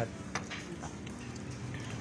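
Quiet background with no clear source and a single faint click about a third of a second in.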